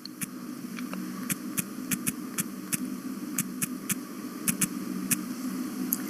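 Light, irregular clicks of typing, about twenty in all, over a steady low electrical hum.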